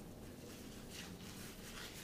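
Faint rubbing and rustling of work gloves being pulled onto the hands, over low room noise.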